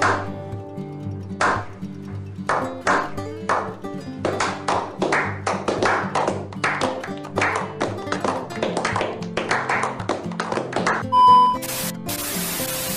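Slow clap over background music: single claps about a second apart at first, coming faster and more often as it goes on. Near the end a short steady test-tone beep, then an even hiss of static.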